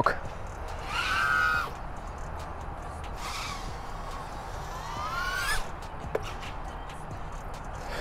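Diatone GT-R349 3-inch micro FPV quadcopter in flight on its original propellers, its motors and props whining from a distance, the pitch swelling and gliding with the throttle: one swell about a second in and a rising glide around five seconds in.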